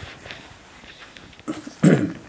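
A man's voice, low and faint at first, then a short loud vocal sound near the end, like a grunt or the start of a word.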